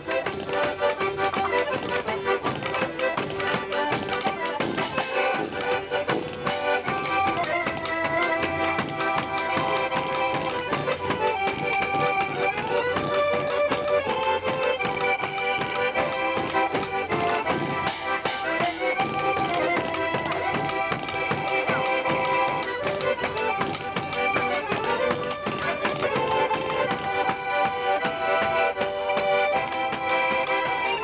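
A traditional Polish folk band playing live. An accordion carries the melody over a hand-held drum beating the rhythm, with a double bass underneath.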